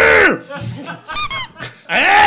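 A drawn-out vocal sound at the start, then a quick run of four or five very high-pitched squeaks just over a second in.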